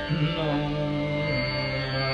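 Male dhrupad singing in Raga Adana over a steady drone. The voice slides near the start, then settles into a long held low note.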